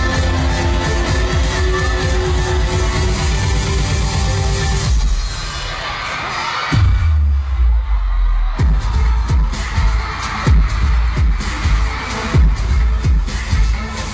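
Loud K-pop stage performance music over an arena sound system. About five seconds in the music thins out, and near seven seconds a heavy electronic beat with deep bass hits comes in.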